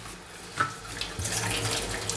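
Kitchen tap running into a stainless steel sink, the water splashing as a plastic canteen is rinsed under the stream; the splashing gets louder about half a second in.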